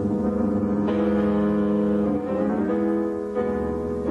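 Solo piano playing classical music: full, sustained chords, with a new chord struck about a second in and a few more changes of notes near the end.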